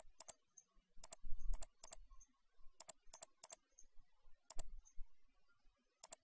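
Computer mouse clicking as bodies are picked one after another in CAD software: sharp clicks, often in quick pairs, in small runs with short gaps, some with a dull low knock beneath them.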